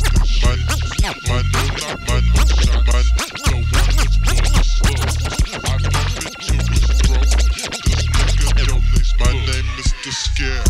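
Memphis rap music from a chopped and screwed-style DJ mix: a heavy bass line that repeatedly stops and starts, under fast, dense percussion hits.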